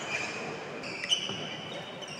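Badminton doubles rally on a wooden indoor court: a single sharp racket strike on the shuttlecock about a second in, with shoes squeaking on the floor.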